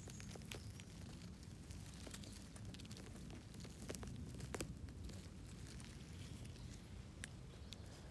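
Faint rustling and scattered small crackles of needle litter and soil as a large porcini mushroom is gripped at the base and twisted out of the forest floor by hand.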